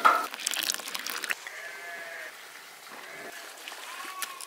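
A few clicks and crackles in the first second, then a faint, short bleat from a farm animal over quiet outdoor ambience.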